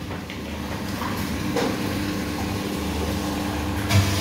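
Automatic 20-litre bottle-filling machine running: a steady hum with water streaming from the filling nozzle into a bottle. The bottle is filling to the brim and foaming at the neck.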